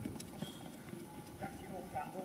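Running footsteps on tarmac, a quick irregular patter of shoe strikes, with faint voices in the background.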